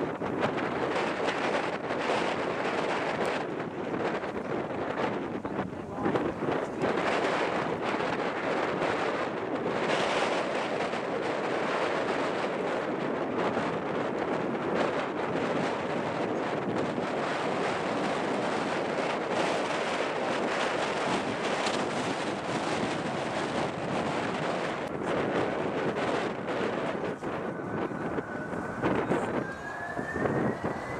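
Steady rushing noise of jet airliner engines across the airfield, mixed with wind buffeting the microphone. Near the end a faint rising whine comes in.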